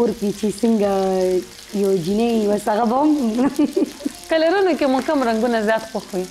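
Patties frying in a shallow pan of oil, a steady low sizzle heard in the gaps under a woman's voice, which is the loudest sound.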